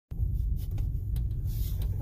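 Steady low road rumble inside the cabin of a Tesla electric car as it drives, with a few faint clicks over it.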